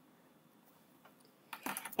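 Pen strokes on paper: faint scratching, then a few short clicks near the end as the writing finishes.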